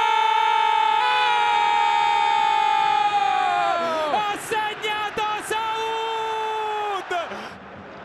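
An Italian football commentator's long, drawn-out goal shout, held on one pitch for about four seconds before it falls away, then a second held shout, over a stadium crowd cheering. Near the end the voice drops out and the crowd noise is left.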